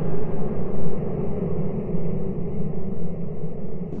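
A low, steady rumbling drone from an ominous soundtrack, a few deep tones held throughout.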